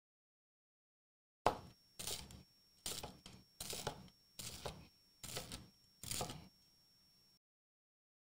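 Knife crunching through the toasted crust of grilled Italian bread against a wooden cutting board: about seven cuts in a steady rhythm, a little more than one a second, starting about a second and a half in with a sharp first crack.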